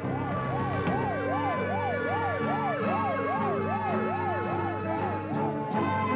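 An ambulance siren wailing up and down quickly, about two to three cycles a second, over music. The siren stops shortly before the end while the music carries on.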